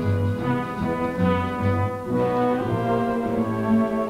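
Orchestral music with brass carrying the melody over a bass line of separate, detached notes.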